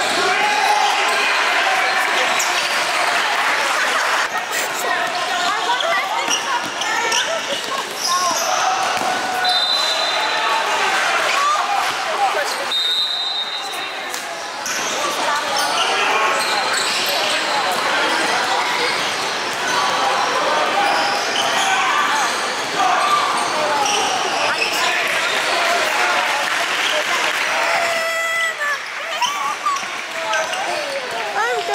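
Game sound of indoor basketball: a ball bouncing on the gym floor, sneakers squeaking and indistinct chatter from spectators in a large echoing hall. Two brief high tones sound near the middle.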